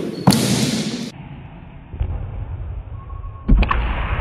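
Sharp thuds and knocks of a padded arrow being shot from a horsebow at a fencer who steps and lunges on a wooden floor: one impact about a third of a second in with a noisy burst after it, and another thud near the end.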